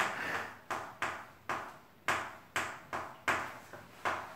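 Chalk striking a chalkboard while writing: about eight sharp taps, roughly two a second, each with a short ringing tail.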